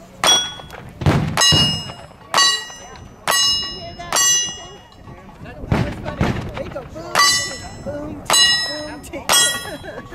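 A string of gunshots at steel targets, about one a second, most hits answered by the bright ringing of the struck steel plate, with a short pause about halfway through.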